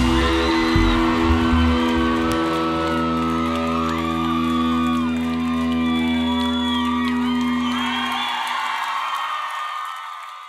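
A live band's final chord held and ringing out on guitars and bass, under a cheering, whooping crowd. The low notes drop out about eight seconds in and the sound fades away near the end.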